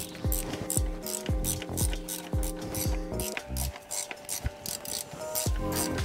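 Background music with a steady beat, with a ratchet wrench clicking under it as it turns the centre bolt of a seal puller, drawing the old front crankshaft seal out of a BMW N54 engine.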